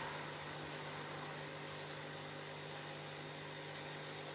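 A steady low electrical hum with faint hiss underneath: background noise on the line during a pause in the talk.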